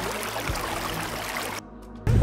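Water spraying from a boat's pull-out deck shower head, an even rushing hiss with the outboards running low underneath. It falls away about a second and a half in.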